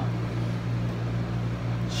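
Steady low hum with a faint hiss, like an air conditioner or fan running in a small room. A short spoken word begins near the end.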